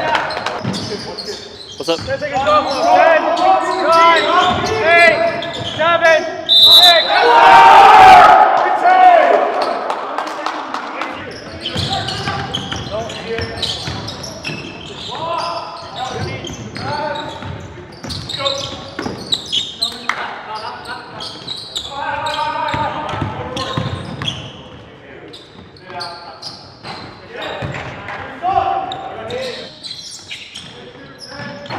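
A basketball being dribbled on a hardwood gym floor, with players' voices in the gym. The voices are loud for about the first ten seconds, then the bouncing is clearer under quieter talk.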